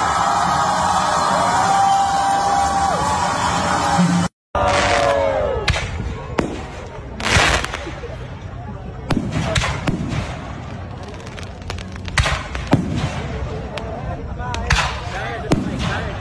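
A crowd screaming and cheering in one sustained shout for about four seconds. After a sudden break, fireworks go off in a series of sharp bangs and crackles, with a falling whistle-like tone at first.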